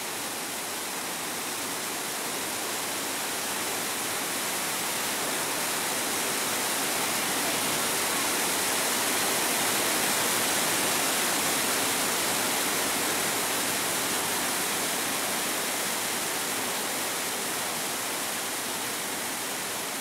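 Trümmelbach Falls, a glacier-fed waterfall plunging through a rock gorge inside the mountain, giving a steady rush of falling water. It swells gradually toward the middle and eases off again.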